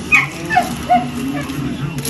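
A small dog whimpering and yipping: three or four short, high squeaks in the first second, each falling in pitch, over background conversation.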